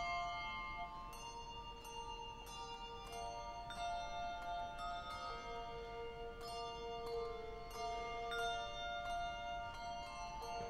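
Handbell choir playing a slow piece: bells struck every half second to a second, each note ringing on and overlapping the next, with several notes often sounding together.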